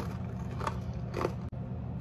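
Chewing a crisp rosemary cracker topped with jam, with two crunches about two-thirds of a second and a second and a quarter in.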